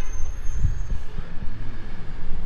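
Low, uneven rumble of street traffic and wind on the microphone.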